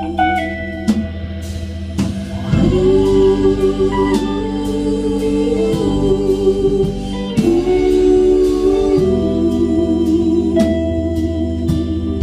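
Live band instrumental break: a Hammond organ holds sustained chords that shift a few times, over hand drum and guitar, getting fuller about two and a half seconds in.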